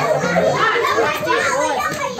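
A crowd of young children chattering and calling out all at once, many voices overlapping without a break.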